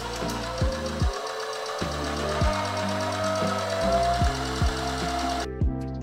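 Electric domestic sewing machine running steadily as it stitches a buttonhole, stopping suddenly about five and a half seconds in. Lo-fi background music with a steady kick drum plays underneath throughout.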